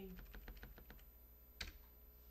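Faint, quick run of light clicks, about ten a second for roughly a second, then a single sharper click about a second and a half in.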